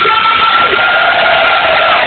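Live rock band playing loud, distorted music, with a long held high note across the whole stretch and a lower sustained note joining about half a second in.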